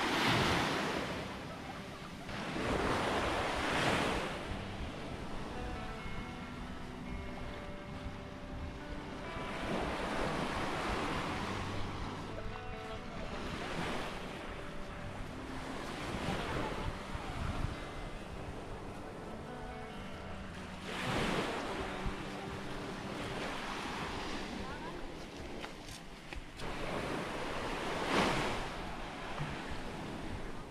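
Small waves washing up and breaking on a sandy beach, the surf swelling and fading every few seconds, with quiet background music underneath.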